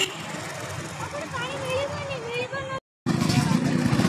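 Street noise with people's voices, then, after a sudden cut about three seconds in, a louder, steady motorcycle engine running close by.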